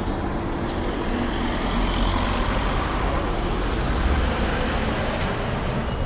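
Busy road traffic: a steady rumble of passing motor vehicles' engines and tyres, swelling slightly about four seconds in.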